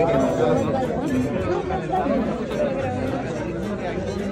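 Indistinct chatter of several people talking at once in a small crowd.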